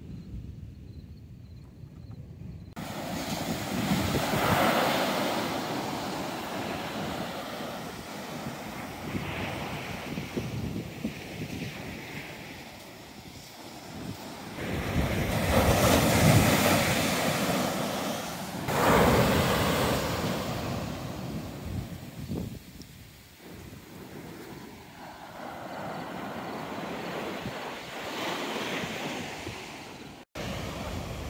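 Ocean surf breaking on a sandy beach, the wash swelling and fading with each wave, with wind on the microphone. It is quieter for the first few seconds, then the surf comes in, loudest a little past halfway.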